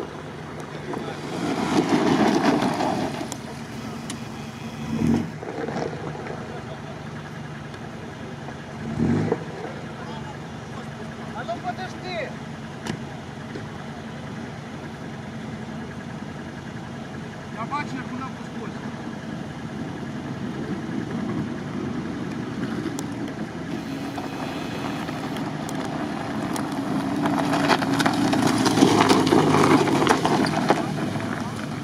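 Jeep Wrangler engine running at a low, steady pace as the Jeep descends an icy slope. The sound grows louder near the end as a Jeep Wrangler rolls close by on the icy, snow-covered track. There is a loud swell of noise about two seconds in and two short thumps in the first ten seconds.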